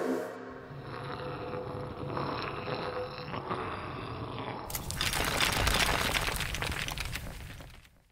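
Logo sound effect: after a quieter stretch, a rushing noise swell starts suddenly about five seconds in, builds, and fades away just before the end.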